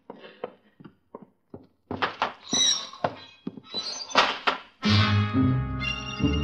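Radio-drama sound effects: a string of knocks and thunks, louder after about two seconds, one with a brief high squeak. Then a dramatic music bridge comes in with sustained low notes about five seconds in.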